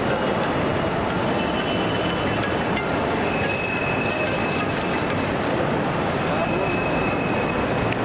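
Loud, steady outdoor noise of traffic and people's voices, with a few thin high squeals in the middle, each about a second long.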